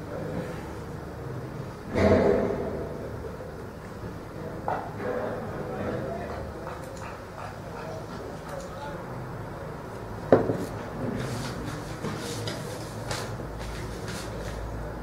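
Cricket players' voices calling across the field. There is a loud burst about two seconds in, just after the bowler's run-up, and a single sharp knock about ten seconds in.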